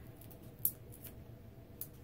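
Light handling of a paper card and a sheet of foam adhesive dimensionals, with one sharp tick just over half a second in and a fainter one near the end.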